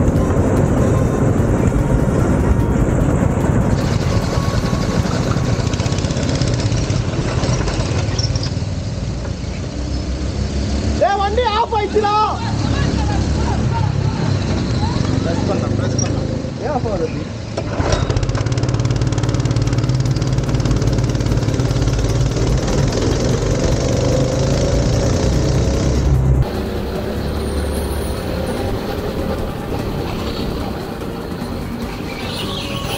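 Go-kart engine running, heard from the kart, with a dense, steady low noise throughout. Voices call out briefly about 11 and 17 seconds in, and the sound changes abruptly near the end.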